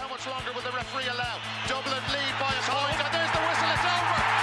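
Theme music with a steady beat of about four strokes a second under an excited sports commentator's call, with crowd noise building near the end.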